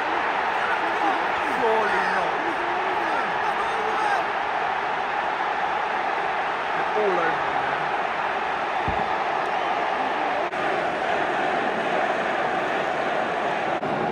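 Large football stadium crowd reacting to a goal: a steady roar of many voices with individual shouts rising and falling through it.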